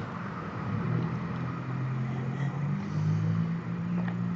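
A low motor hum whose pitch steps up and down a few times, over a faint steady hiss.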